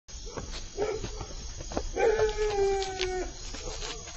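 A dog on a film soundtrack: a short whine, then one long howl that sags slightly in pitch, with a few faint knocks.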